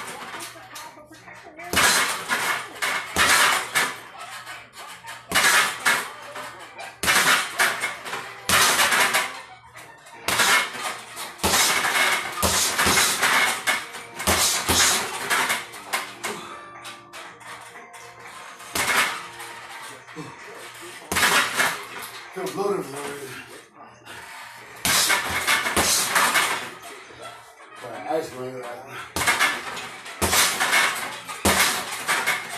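Flurries of fast punches on an RDX heavy punching bag, each flurry a quick run of strikes lasting about a second, with short pauses between, about a dozen flurries in all. Music and a voice play in the background.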